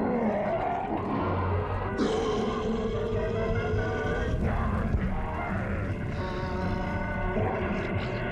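Orchestral cartoon score playing held chords that shift several times, with a new, brighter chord coming in about two seconds in.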